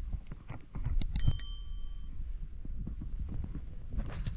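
A single bright bell ding about a second in, from a subscribe-button overlay's notification-bell sound effect, with a short ringing tail. Under it are scattered clicks and crackles of dry branches being handled and gathered.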